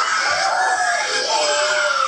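A group of young children calling out together in high, overlapping voices.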